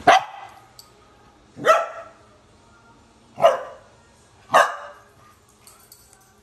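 A curly-coated dog barking four times, each bark short and sharp, spaced about a second and a half apart.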